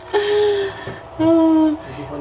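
A woman's voice holding two long, steady sung or hummed notes, the second lower than the first.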